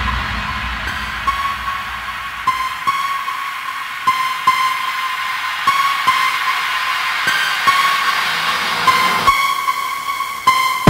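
Instrumental trap-metal type beat at 150 BPM in G minor, in a stripped-back verse section: a high, whistle-like synth melody repeats over sparse paired percussion hits about every second and a half. The bass fades out in the first couple of seconds and stays out.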